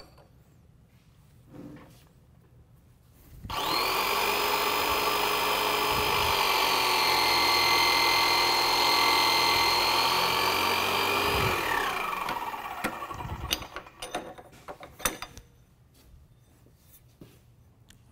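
Electric hydraulic pump motor running with a steady whine for about eight seconds, driving a guided-bend jig through a root bend of a welded test strap, then winding down with a falling pitch. A few clanks of the jig and strap being handled follow.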